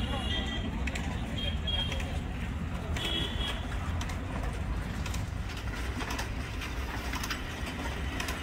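An engine running steadily with a low rumble, with short high bird chirps over it in the first few seconds.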